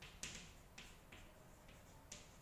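Chalk writing on a chalkboard: a handful of faint, short taps and scrapes as the chalk strikes and drags across the board.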